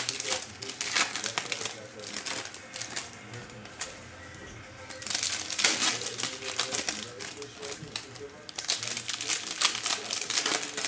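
Foil wrappers of Panini Flux basketball card packs crinkling as they are torn open and handled by hand, in bursts that are loudest about five to seven seconds in and again near the end, with a quieter lull around three to five seconds.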